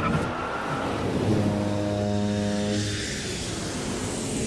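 Sound effects of an animated title sting: a rushing, vehicle-like pass with a steady low buzzing tone held for about a second and a half in the middle, thinning to a hiss near the end.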